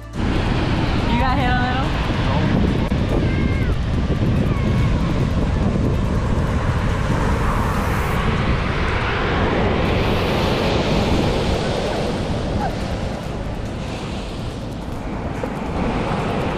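Ocean surf breaking and washing up over wet sand at the water's edge, a steady rush of noise.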